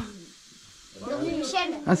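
Speech: a man talking in French, with a pause of about a second near the start filled only by faint room hiss.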